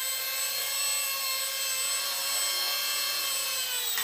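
Micro electric RC Bell 222 helicopter, its electric motor and rotor giving a steady whine while hovering. Near the end the pitch falls as it settles onto the landing pad and throttles down.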